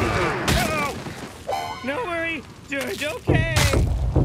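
Cartoon soundtrack: wordless character vocalising, with voice sounds gliding up and down in pitch, a sharp hit about half a second in, and a loud low booming rumble that starts near the end.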